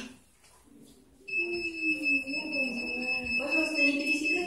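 A continuous, steady, high-pitched electronic alarm tone starts about a second in and holds without a break.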